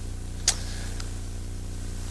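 Steady electrical hum and buzz on an old off-air television recording's sound track, with a sharp click about half a second in and a fainter click about a second in.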